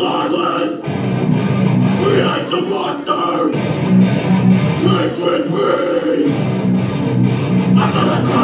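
Live rock band playing the opening of a new song: distorted electric guitars and bass in a stop-start riff, the heavy low end cutting in and out every second or so.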